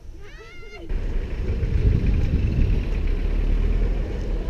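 A brief pitched call, meow-like and rising and falling, in the first second. Then, from about a second in, outdoor street noise with car traffic and a heavy low rumble.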